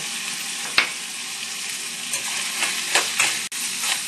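Pumpkin pieces sizzling in hot oil in a pan, a steady hiss, with a sharp click about a second in and a few metal-spoon clicks and scrapes against the pan near the end as stirring begins.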